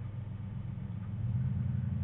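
A steady low hum, like a motor running, that grows slightly louder about halfway through.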